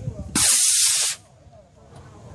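A model rocket motor igniting and lifting off the pad: a loud, rushing hiss that lasts under a second and cuts off sharply.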